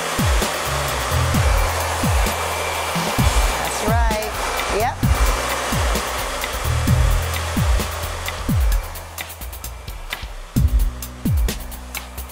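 Conair 1875-watt handheld hair dryer blowing steadily as it dries hair through a round brush, over background music with a regular bass beat. The dryer's noise drops away in the last few seconds.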